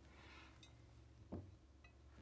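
Faint handling sounds with one soft knock a little past halfway and a couple of tiny clicks after it, as a small battery LED light is set down inside a glass vase.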